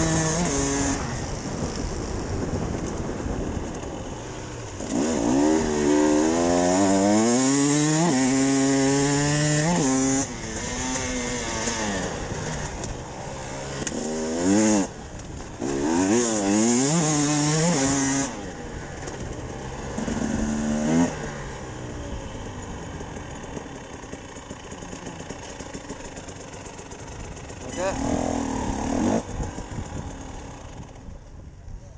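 Enduro motorcycle engine heard from the rider's helmet, revving hard in bursts that climb in steps as it shifts up, then dropping back between bursts, with wind rushing over the microphone. A brief loud knock comes about halfway through, and the engine runs lower and quieter over the last third as the bike slows.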